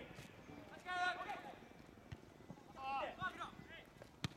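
Young soccer players shouting high-pitched calls across the pitch, one about a second in and another near three seconds, with a few short knocks in between.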